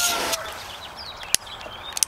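A rooster's crow trailing off at the start, over a short hiss of water from a garden hose spray nozzle. Faint chirps and a single sharp click follow.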